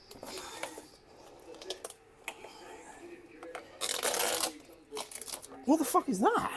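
Clicks, rustling and scraping of hands working at plastic bumper fixings behind a car's front bumper, with a longer scraping, rustling burst about four seconds in. A short wavering vocal sound comes in near the end.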